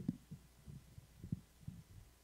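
Microphone being handled and adjusted on its stand: a string of dull, irregular low thumps, roughly three a second, with a faint steady hum beneath.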